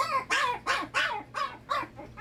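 A small dog in a kennel barking over and over, about three quick yelps a second, each rising and falling in pitch.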